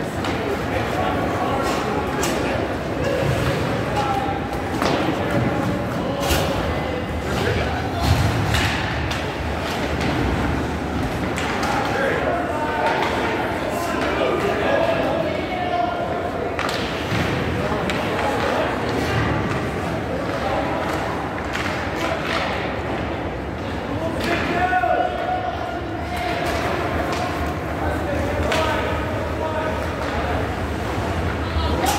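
Ice hockey play in an indoor rink: repeated sharp knocks and thuds of puck, sticks and players against the boards and ice, over indistinct shouting and talk from players and spectators.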